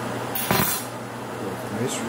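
A knife and fork clinking and scraping briefly against a serving board while food is cut, once about half a second in.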